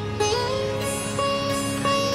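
Background music: a plucked string instrument playing a melody with sliding note bends, over a steady low drone.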